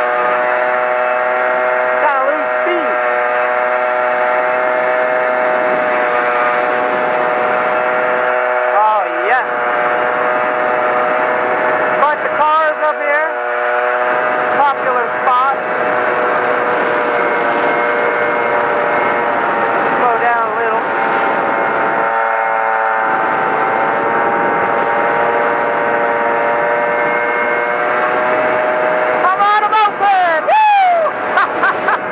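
Honda PA50II Hobbit moped's small two-stroke engine running steadily while riding, with its pitch wavering briefly a few times.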